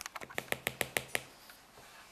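A cockatiel's beak tapping quickly on the iPad's glass screen: a run of about eight sharp, even clicks, about seven a second, stopping a little over a second in.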